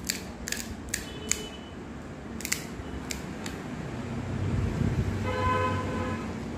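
Crisp cracks and crunches of fried pani puri shells, a handful of sharp ones in the first three seconds or so. Near the end a low rumble builds and a steady horn-like tone sounds in the background.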